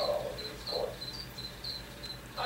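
A feeder cricket chirping steadily: short, high chirps at about five a second.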